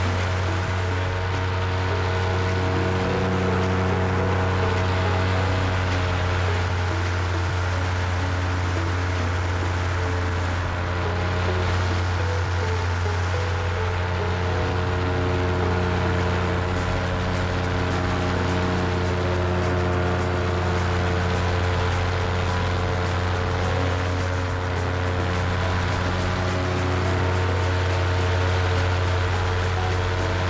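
Paramotor engine and propeller running at steady throttle in flight, a constant droning hum that holds one pitch throughout.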